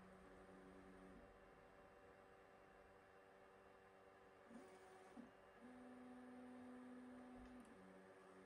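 Very faint stepper-motor tones of a Sovol SV08 3D printer moving its toolhead and gantry during quad gantry levelling, over a low constant hum: a steady tone for about the first second, two short blips around four and a half and five seconds in, then a longer steady tone for about two seconds near the end.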